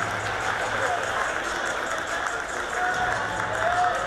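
Indoor track arena ambience: a steady hall murmur with a low hum, and faint distant voices calling out, loudest near the end.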